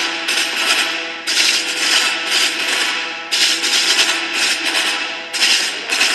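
Marching band snare drums playing rapid passages about two seconds long, each breaking off sharply before the next starts.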